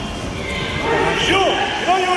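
Voices in a gymnasium during karate sparring bouts: overlapping chatter with short, sharp shouts that rise and fall in pitch, about a second and a half in and again near the end.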